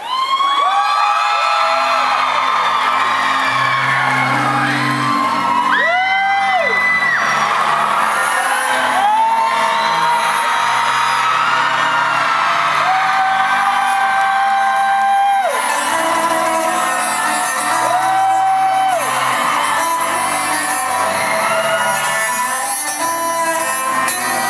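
Electric cello bowed in long held notes that slide up into pitch, over low sustained bass notes, with a crowd whooping and cheering.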